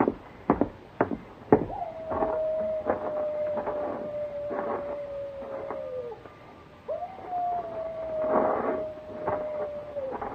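Two long coyote howls, a radio-drama sound effect. Each rises briefly, holds on one pitch and sags at the end; the second starts a second after the first dies away. A few sharp knocks come before them at the start.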